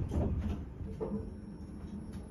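Steady low rumble inside a KONE elevator car, with faint voice fragments in the first second.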